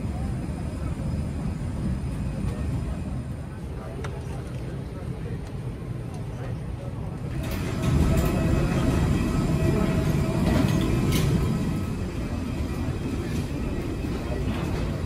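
Airliner cabin noise: a steady low rumble with faint passenger voices. About halfway through, a louder, fuller rumble of the aircraft on the ground takes over, then eases near the end.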